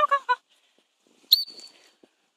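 A short string of high calls ends just after the start. About a second later comes a single short gundog-whistle blast, one steady high note: the stop signal telling the running flat-coated retriever to halt and sit.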